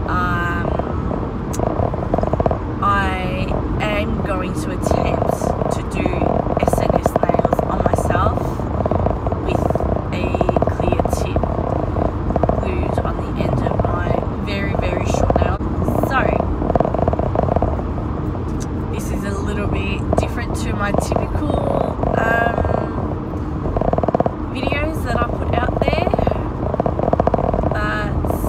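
Steady road and engine noise inside a moving car's cabin, with a woman talking over it.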